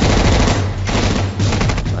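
Rapid automatic gunfire from a film soundtrack: long strings of shots in quick succession over a low, steady rumble.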